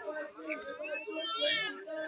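Murmur of voices from a gathered crowd, with one loud, high-pitched, wavering cry rising over it about a second in.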